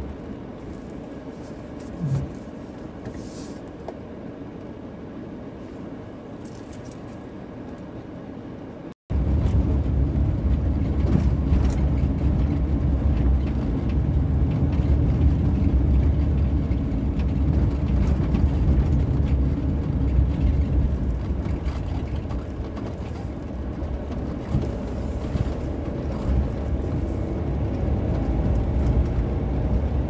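Camper van driving along a narrow rough lane: a steady low rumble of engine and tyres as heard from inside the cab. It starts abruptly about nine seconds in, after a quieter stretch with one brief bump.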